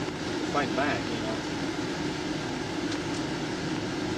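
Steady roadside vehicle hum from a dashcam recording, with a brief muffled voice about half a second in.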